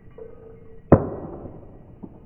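A putted disc striking the chains of a disc golf basket: one sharp metallic clash about a second in that rings away within about half a second.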